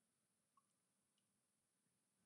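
Near silence: digital quiet with no audible sound.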